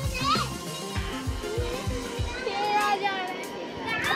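Children's voices and high shouts during play on a swing, over background music with a beat; the low beat drops away a little past the halfway point.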